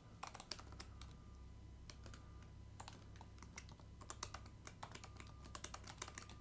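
Typing on a computer keyboard: a faint, uneven run of keystroke clicks.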